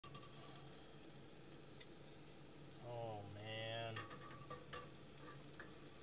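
Shrimp frying with a faint sizzle in a stainless steel skillet on a gas burner as they are stirred, with a couple of light clicks about four seconds in. A man's short hum or vocal sound about three seconds in.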